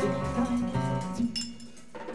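Free-improvised jazz: low held pitched tones with clinking metallic percussion strikes and short ringing accents.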